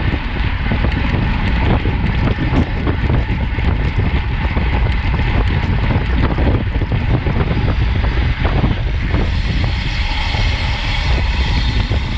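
Steady, heavy wind noise buffeting the microphone of a camera on a road bike riding at about 37 mph, over the rumble of its tyres on asphalt.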